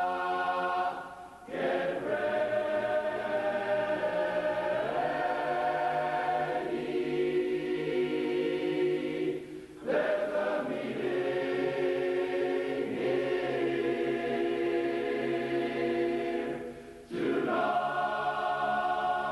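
Large men's barbershop chorus singing a cappella in close four-part harmony, holding sustained chords. The singing breaks off briefly three times between phrases.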